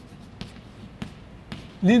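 Chalk tapping and scraping on a blackboard while words are written, with a couple of sharp taps; a man starts speaking near the end.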